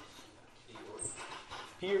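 Mostly speech: a faint voice with a brief high squeak about a second in, then a man's voice near the end.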